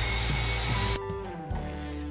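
Handheld electric car polisher running steadily as it buffs paint, a loud even whir with a low hum. It cuts off abruptly about a second in, leaving background music.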